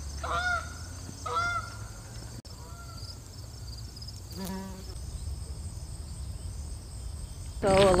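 Geese honking: a few short rising-and-falling honks in the first three seconds, growing fainter, then one lower call about four seconds in, over a faint low rumble.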